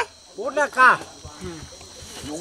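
Steady high-pitched chirring of crickets, with a man's short calls over it about half a second in.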